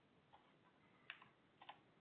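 Near silence with a few faint clicks of computer keys being pressed, one of them a quick double.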